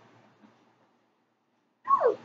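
Mostly quiet room tone, then near the end a brief high vocal sound from a woman that slides down in pitch.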